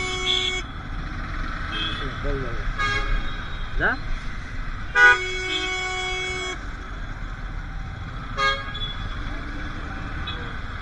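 Vehicle horns in slow, congested traffic: one long horn blast ends just after the start, another sounds for over a second about five seconds in, and short toots come about three and eight and a half seconds in. A steady low rumble of idling engines runs underneath.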